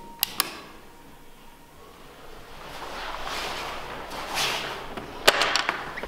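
Quiet handling noises: two sharp clicks just after the start, soft rustling in the middle, then a quick run of sharp clicks near the end.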